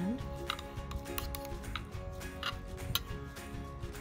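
Background music with steady held notes, over a few short clicks and scrapes of a serrated carving knife and carving fork against a plate as a grilled steak is sliced; the sharpest click comes about three seconds in.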